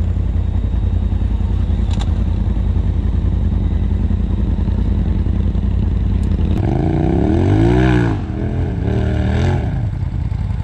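Polaris RZR side-by-side engine idling with a steady, pulsing low rumble, then revved up and back down about seven seconds in, followed by a couple of smaller blips of the throttle.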